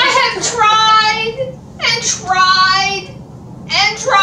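High-pitched voices singing or chanting three drawn-out notes, each about a second long, with short breaks between them.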